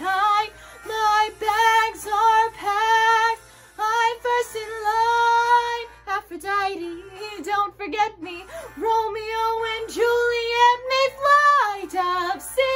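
A young woman singing a musical-theatre song, in phrases of held notes with short breaks for breath between them. Near the end one long note swells and rises slightly, then drops off.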